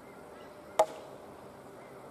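A single sharp knock about a second in, with a brief ringing tone, over faint outdoor background.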